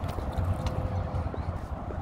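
Footsteps on a wooden boardwalk, a soft knock every half second or so, under a low, uneven rumble of wind on the microphone.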